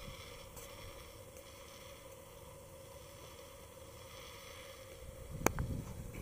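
Faint steady background noise with a faint hum. About five seconds in comes a low rumble of handling noise on the camera's built-in microphone, with a sharp click at about five and a half seconds.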